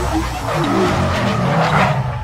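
Sound effect of car tyres squealing in a burnout over an engine rumble. The screech swells toward the end.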